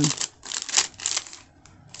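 Clear plastic sticker packaging crinkling in short crackly bursts as it is handled, for about the first second.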